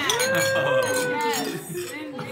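A person's voice holding one long drawn-out call for about a second and a half. It rises at the start and then slides slightly down, over quieter overlapping voices.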